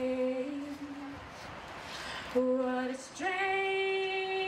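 A woman singing unaccompanied, holding long, steady notes, with a short pause for breath in the middle before another long held note.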